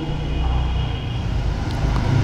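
A steady low rumble in a pause between spoken phrases.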